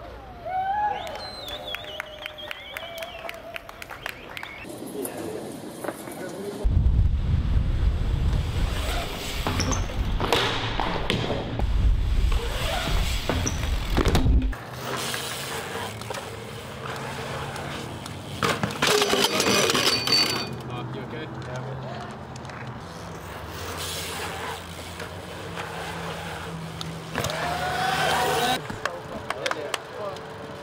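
BMX bikes riding on concrete: tyres rolling, with repeated sharp knocks of landings and of metal hitting ledges. There are brief shouts near the start and near the end, and a louder low rumble for several seconds in the middle.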